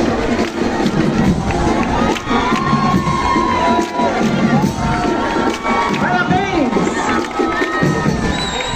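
A large crowd of spectators cheering and shouting, with many high voices rising and falling over the steady noise.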